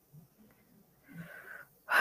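A woman breathing audibly between sentences: a faint breath about a second in, then a louder breath near the end.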